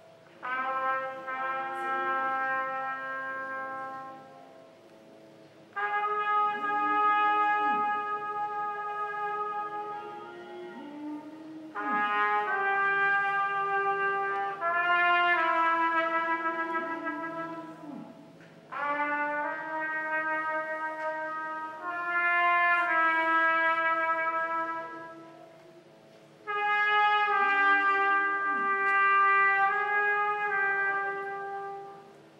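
Band music: held brass-like chords in phrases of several seconds, each entering suddenly, over a lower line whose notes slide downward at their ends.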